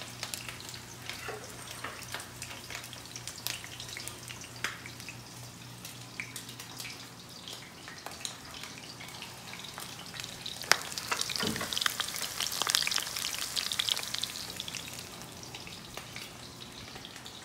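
Flat shrimp meatball patties frying in hot oil in a stainless steel pan, with a continuous crackle and frequent sharp spits. A sharp pop comes about two-thirds of the way through, and the sizzle then grows louder for a few seconds.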